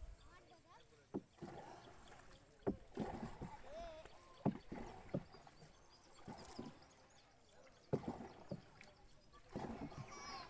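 Small boat being paddled across a pond, with about six sharp knocks at uneven intervals, likely the paddle striking the wooden hull.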